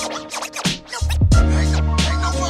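Boom bap hip hop instrumental beat with turntable scratching and no vocals. The bass drops out for about the first second, then comes back in under the drums.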